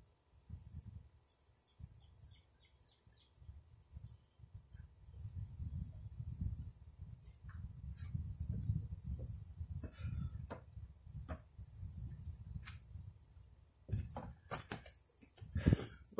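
Low rumble on a phone's microphone, swelling for several seconds in the middle, with scattered light clicks and a few faint bird chirps early on.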